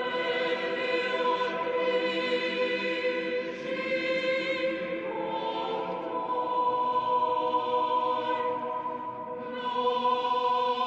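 Choral music: voices holding long, sustained chords, moving to a new chord about halfway through.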